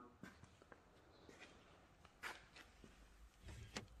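Near silence: room tone with a few faint, short clicks and shuffles.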